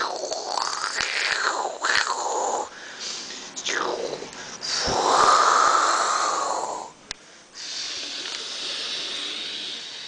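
A person making breathy whooshing and blowing sounds with the mouth, sweeping up and down in pitch, with one long loud whoosh in the middle and a softer steady hiss near the end.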